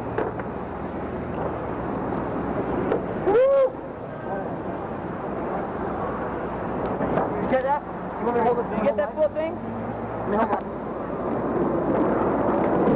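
Camcorder audio from a busy night street: indistinct voices and shouts over a steady hiss and low hum, with one loud whoop about three and a half seconds in and a burst of chatter in the second half.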